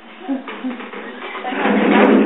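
Voices of small children: short babbled syllables, then a louder breathy sound building in the last half second.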